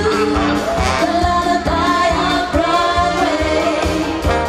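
Live band music with singers at microphones, voices over a drum kit and electric bass keeping a steady beat.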